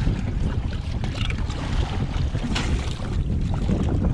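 Wind rumbling steadily on the microphone aboard a small boat, with water moving around the hull.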